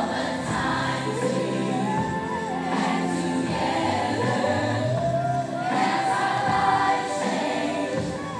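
Children's choir singing a song together; the melody climbs about halfway through into a long held note.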